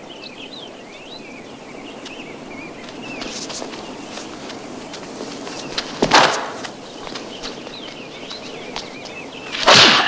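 Film sound effects of a martial-arts kick: over a quiet steady background, a sharp whip-like whoosh about six seconds in as a jumping kick is thrown, and a louder burst of strikes just before the end.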